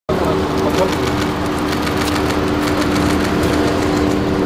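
A car engine idling with a steady hum, under people's voices and scattered sharp clicks.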